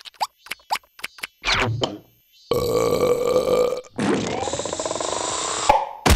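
Cartoon comedy sound effects: a run of quick pops, then two long rasping gas noises like a burp, the second rising in pitch and ending in a sharp bang as the yellow gas cloud bursts out.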